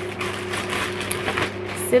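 Plastic packaging bag crinkling and rustling in irregular bursts as it is handled and opened, over the steady hum of an electric fan.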